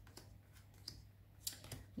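Faint clicks and ticks of oracle cards being handled and laid down on the deck, a few light strokes with a quick cluster about one and a half seconds in.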